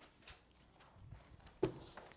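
Faint room tone with a few soft ticks, and one sharper knock about one and a half seconds in.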